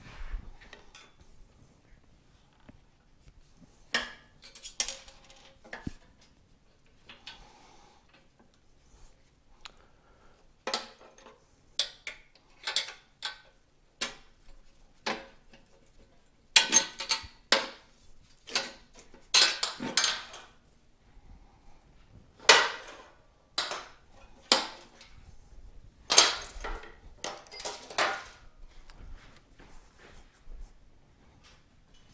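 Metal hand tools clinking as a wrench works the engine mounting bolts on a motorcycle frame: irregular sharp metallic clinks and taps, some in quick clusters, with quiet gaps between.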